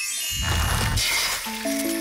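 Cartoon magic-spell sound effect from a fairy's wand: a glittering, tinkling shimmer with a low whoosh under it about half a second in. Music with held notes comes in about one and a half seconds in.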